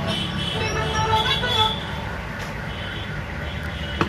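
Background traffic noise: a steady low rumble, with pitched horn-like tones over the first second and a half or so that then fade.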